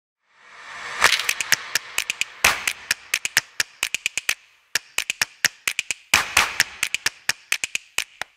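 Logo intro sting: a run of sharp clicks and taps, several a second, over whooshes that swell up under a second in, about two and a half seconds in and about six seconds in.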